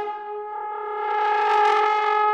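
Trombone holding one long steady note, swelling louder and brighter toward the end.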